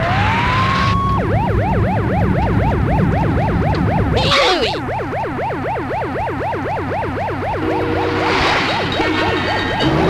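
Cartoon police siren: a slow wail switches about a second in to a rapid yelp, sweeping up and down about five times a second over a steady low rumble. A short whoosh comes near the middle, and a steady multi-note horn-like tone joins near the end.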